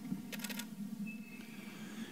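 DSLR camera shutter firing a quick burst of about four or five clicks.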